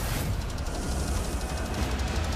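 Movie trailer soundtrack playing back: music over a deep, steady low rumble.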